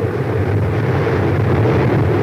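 Mechanized flamethrower on a Sherman medium tank firing a continuous jet of burning fuel: a loud, steady rushing noise with a low rumble under it.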